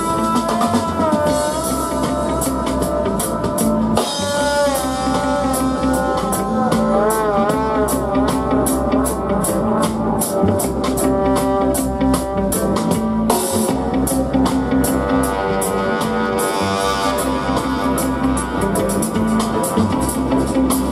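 Live reggae dub band playing: electric bass line and drum kit keeping a steady beat, with saxophone and trombone playing a melody over them. Around the middle, the horns hold notes with a wavering vibrato.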